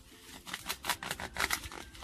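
A sweetcorn cob being snapped and twisted off its stalk, the stem and husk giving a quick run of sharp crackling snaps from about half a second in.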